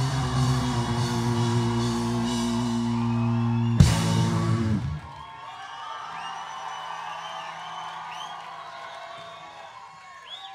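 Live rock band holding a loud sustained guitar chord over drums, closing on a final hit about four seconds in. The chord rings out and stops about a second later, leaving a quieter stretch with a few wavering high tones.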